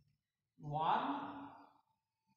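A man's single breathy vocal sound, like a sigh, lasting about a second and starting just over half a second in.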